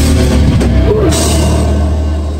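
Loud heavy rock band music: distorted guitar over a driving drum kit with cymbals and a steady low bass.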